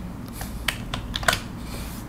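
A few separate computer keyboard keystrokes, sharp clicks spread unevenly through the two seconds, the loudest about a second and a half in.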